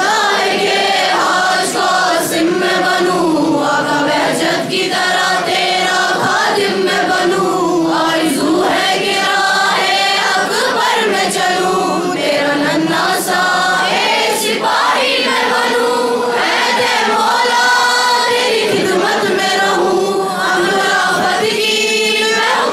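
A group of girls chanting a noha, a Shia mourning elegy, in unison into microphones. It is a steady melodic recitation with no break.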